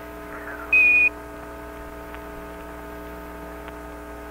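Apollo air-to-ground radio channel open with no voice: steady hum and hiss with faint steady tones. About a second in comes a short, loud single-pitched beep with a burst of static, the Quindar tone of a push-to-talk transmission.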